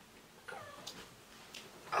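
A faint, short whimper from a woman with her hands over her mouth, its pitch rising and falling once about half a second in, followed by a couple of soft clicks.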